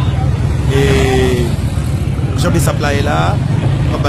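Steady low rumble of a vehicle on the move, its road and engine noise continuous throughout.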